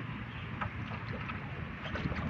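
Wind buffeting the microphone outdoors as a steady, uneven low rumble, with a few faint short high clicks scattered through.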